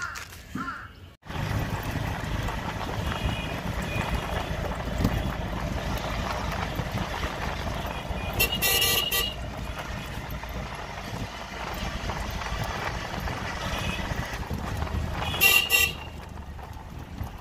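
Steady low rumble of a moving road vehicle heard from on board, with a horn tooted in a quick run of short beeps about halfway through and again near the end.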